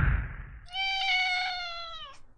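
A cat's meow sound effect in a logo sting. A whoosh fades out in the first half-second, then comes one long meow that drops in pitch at its end.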